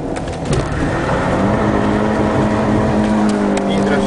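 Rally car's engine heard from inside the cabin, pulling out of a right turn, its note settling into a steady hum from about a second in, over tyre and road noise.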